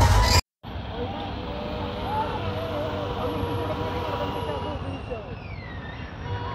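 Background music cuts off abruptly about half a second in. It gives way to the steady engine and road noise of a slow vehicle convoy, with people's voices and shouts over it.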